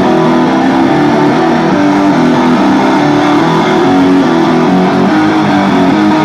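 Loud distorted electric guitars playing live through stage amplifiers: a riff of held notes that change pitch, with no drum hits or cymbals in this passage.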